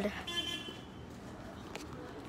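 A faint, steady horn-like tone lasting about half a second, followed by a single soft click near the end.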